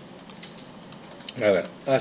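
A few faint computer clicks over a low steady hiss, then a man begins speaking about one and a half seconds in.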